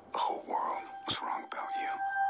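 A breathy, whispery voice-like sound sweeping up and down, with a sharp hit about a second in. A single held musical tone comes in partway through.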